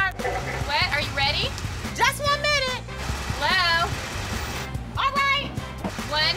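Short spoken phrases, untranscribed, over background music with a bass line.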